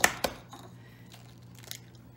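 A raw egg tapped sharply twice against the kitchen countertop to crack its shell, the second tap about a quarter second after the first, with a faint click near the end.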